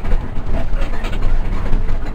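Cabin noise inside a Hino RK8 260 diesel bus on the move: a loud, steady low engine rumble with constant rattling from the body and fittings.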